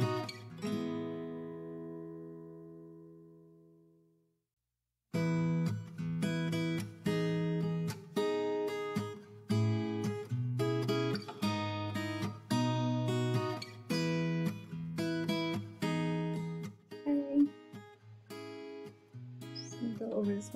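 Background acoustic guitar music. A strummed chord rings out and fades away over the first four seconds, then after about a second of silence the strumming starts again with a steady beat.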